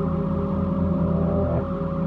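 Ambient drone music: a deep, steady low hum under held tones that barely move, with a slight shift in the chord about one and a half seconds in.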